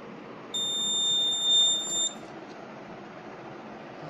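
Electronic buzzer on a microcontroller health-monitor board sounding one steady, high-pitched beep of about a second and a half, starting about half a second in.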